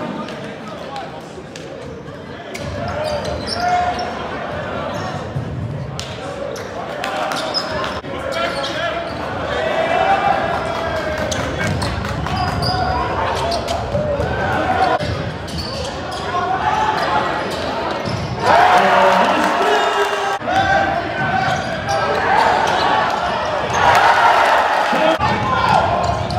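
A live basketball game in a large gym: a basketball bouncing on the hardwood court under a steady hubbub of crowd voices. The crowd gets louder about three-quarters of the way through.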